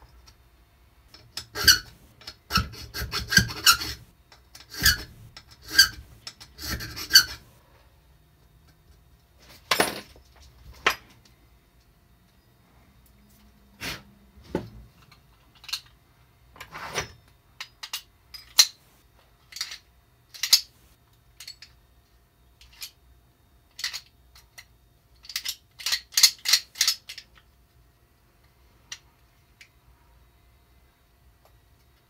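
A hand file rasps back and forth across a steel key blank clamped in a bench vise, in a quick run of strokes that widens a cut in a key being made by hand. After that come scattered single scrapes and clicks, and a short cluster of them near the end.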